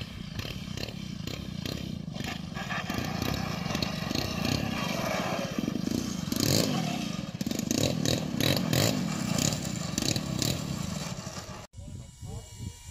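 Radio-controlled aerobatic model airplane's engine running as it taxis along the runway, its pitch rising and falling with the throttle. The sound cuts off suddenly near the end.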